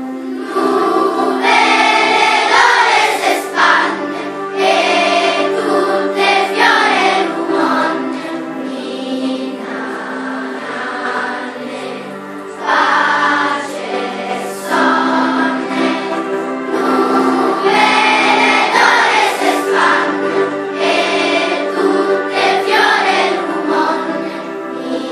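Children's school choir singing a song in phrases that swell and ease every few seconds, over steady held low notes.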